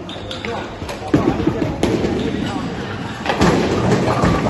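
Bowling ball set down onto the wooden lane with a heavy thud about a second in, then rumbling as it rolls down the lane, with a louder crash of pins near the end.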